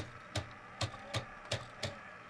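3D-printed PLA triple-axis tourbillon model's escapement ticking: the plastic escape wheel and fork clicking at about three ticks a second, evenly spaced.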